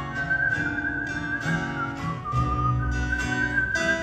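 A whistled melody in long held notes that step down about two seconds in and climb back near the end, over strummed tenor guitar, lead guitar and plucked upright bass.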